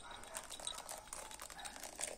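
Faint crackling and fizzing from hot beer wort in a pot, with Centennial hop pellets just added and breaking up as small bubbles pop at the surface.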